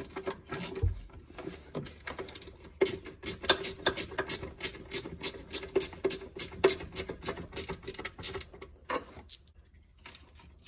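Ratchet wrench clicking as a bolt is tightened: a long run of quick, even clicks, about five a second, that stops near the end.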